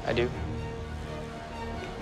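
Background music score with held notes over a low bed, under a brief spoken reply at the start.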